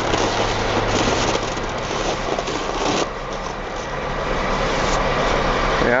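Log truck's diesel engine running steadily at idle under a broad, even hiss, which dips slightly about halfway through.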